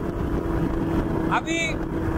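Powered paraglider trike's engine and propeller running at a steady drone in flight, with one constant tone over a dense low rumble, heard close up from the trike's frame.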